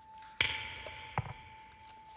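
A single sharp ringing strike about half a second in, fading over about a second, with a soft tap a little later and a faint steady high tone underneath.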